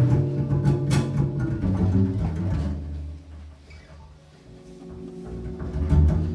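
Free-improvised live trio music on double bass, electric guitar and electric zither: deep double-bass notes under held, ringing tones. The music thins out about halfway through, then swells again near the end.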